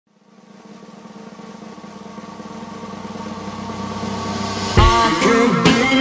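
Rock intro music: a steady drone fades in and swells for about four and a half seconds, then drums crash in and guitar comes in.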